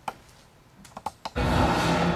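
A few sharp clicks from a laptop's keys or trackpad, then a much louder, noisy sound with a few held tones cuts in about one and a half seconds in.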